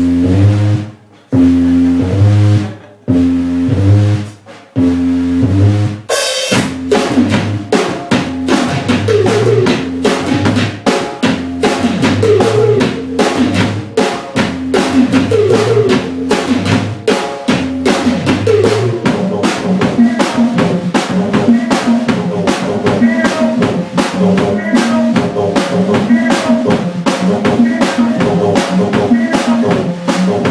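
Live electronic rock from a synthesizer-and-drums duo: four loud, held synth chords about a second and a half apart, then about six seconds in the drum kit comes in with fast kick and snare under a repeating synth bass line.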